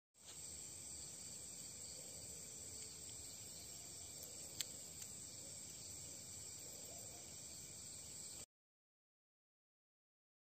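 Faint, steady high-pitched chirring of crickets at night, with one small sharp click a little before the midpoint. The sound cuts off to dead silence near the end.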